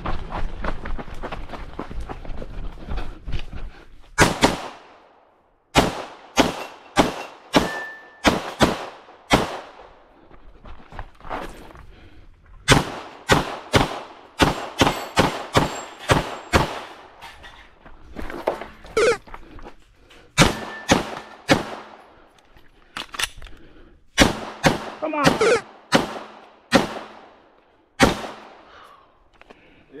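Glock 17 9mm pistol fired in several quick strings of shots, some twenty or more in all, with short pauses between the strings. It starts about four seconds in and stops shortly before the end.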